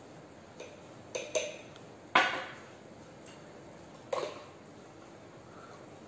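A handful of sharp clinks and knocks as glass and plastic containers are handled and set down on a glass tabletop. The loudest comes about two seconds in, with a short ring after it, and a second ringing knock follows about two seconds later.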